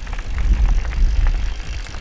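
Mountain bike rolling fast down a gravel track: tyres crunching over the gravel with scattered clicks and rattles, under a heavy wind rumble on a helmet-mounted microphone.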